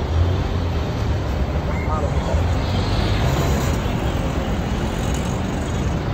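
Congested street traffic: idling vehicle engines make a steady low rumble under a constant wash of road noise.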